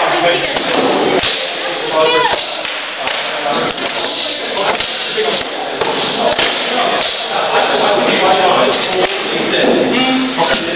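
Armoured fighters sparring: irregular thuds and knocks as practice weapons strike shields, helmets and armour, with voices talking in between.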